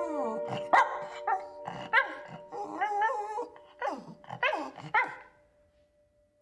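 Small terrier barking in a run of about a dozen short, pitch-bending calls over held music tones. The calls stop shortly before the end.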